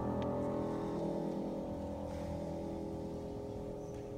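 A grand piano chord ringing on and slowly fading away, several held tones dying together.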